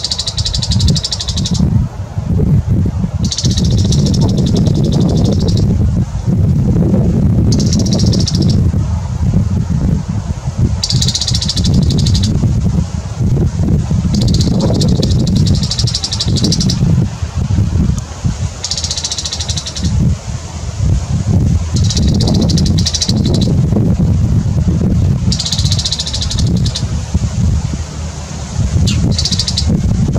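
Male bull-headed shrike giving its loud, high-pitched territorial call (takanaki): about nine bursts of rapid, harsh, repeated notes, each a second or two long, every few seconds. A steady low rumble runs underneath.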